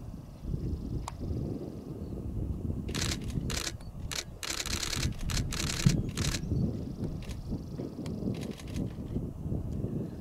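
Wind buffeting the camera microphone as an irregular low rumble, with a run of short hissing rustles in the middle and a few more near the end.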